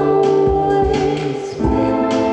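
Live electronic dance-pop: a sung vocal held over sustained synthesizer chords, with kick-drum thumps underneath. The chord changes about one and a half seconds in.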